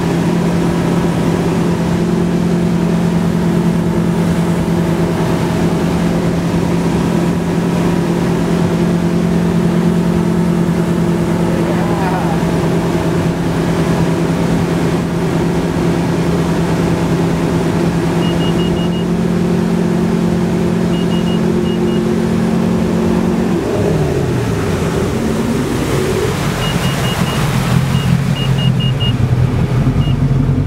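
Ski boat engine running steadily at towing speed over wind and wake noise. About 24 seconds in it is throttled back and its pitch drops to a slower, lower run, with the skier down in the water. Runs of short high beeps come in twice in the second half.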